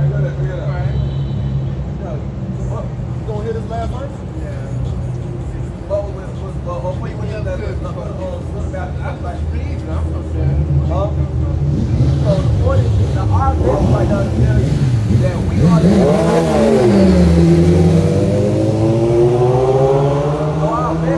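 City street traffic with a steady low rumble, and a vehicle engine revving and accelerating past during the last few seconds, under indistinct talk.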